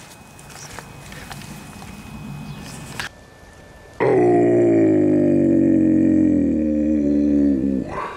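Faint outdoor background, then after a cut a man's long drawn-out vocal groan lasting about four seconds, sliding slightly down in pitch.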